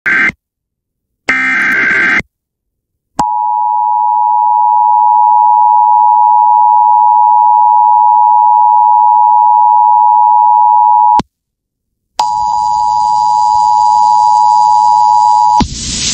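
Emergency Alert System tones from a radio broadcast. It opens with two short, harsh warbling data bursts of the SAME digital header, a second apart. Then comes the steady two-tone attention signal, held about eight seconds, a one-second gap, and the two-tone again for about three seconds over hiss and faint high whistles, cut off as an announcer's voice begins.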